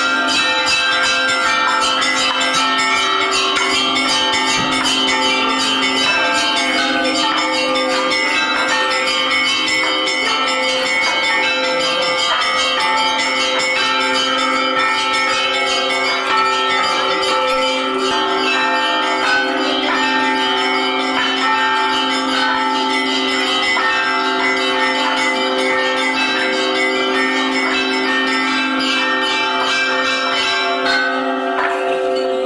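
Church bells ringing continuously in a rapid peal, several bells sounding together and overlapping throughout.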